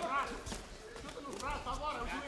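Faint shouted voices from around the cage, heard near the start and again in the second half, with a few light knocks in between.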